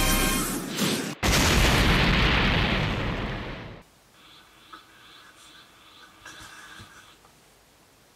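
Music that cuts off about a second in, followed at once by a loud boom like an explosion sound effect that fades away over about two and a half seconds, leaving only faint sound.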